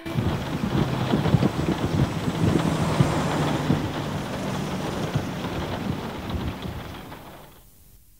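A rumbling, crackling noise effect that cuts in sharply as the song ends, stays rough and irregular, then fades out near the end.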